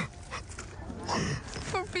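A young woman, emotional after speaking of her family, draws a tearful, whimpering breath about a second in; her voice resumes near the end.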